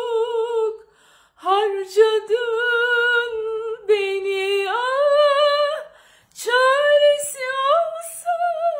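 A woman singing unaccompanied: a wordless, ornamented vocal line held high with vibrato, broken twice by short pauses for breath, climbing higher in its second half.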